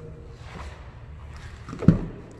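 Low handling noise, then one sharp, heavy clunk near the end as the pickup's rear door handle is pulled and the door latch releases.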